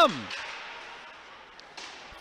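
Ice hockey arena during live play: a steady background hiss of the rink, with a few faint sharp knocks of play on the ice near the end.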